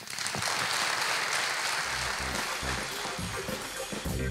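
Audience applause in a hall, breaking out right after the closing words. About two seconds in, background music with a steady beat comes in under the clapping.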